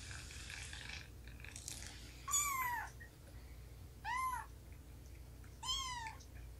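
A cat meows three times, short calls that rise and then fall in pitch, spaced about a second and a half to two seconds apart.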